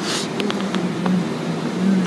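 Automatic car wash heard from inside the car: a steady drone runs under water spray, with a burst of hiss right at the start and a few light taps on the body about half a second in.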